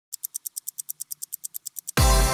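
Fast, even ticking sound effect like a sped-up clock, about nine crisp, high ticks a second, counting in the programme's intro.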